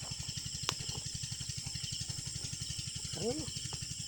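A steady, fast low throb like a small motor running, about a dozen beats a second, under a constant high insect drone, with one sharp click just under a second in.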